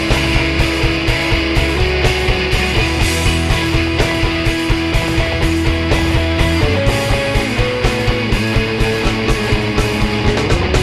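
Live rock band playing an instrumental passage: electric guitar, keyboard and drum kit with a steady beat. The held melody notes move up to higher pitches about seven seconds in.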